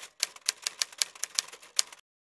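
Typewriter sound effect: a quick, irregular run of sharp key clicks, about eight a second, typing out on-screen text.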